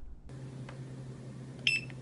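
Handheld barcode scanner giving one short high beep about 1.7 s in, the good-read signal as it scans the barcode on a container label. A low steady hum runs under it.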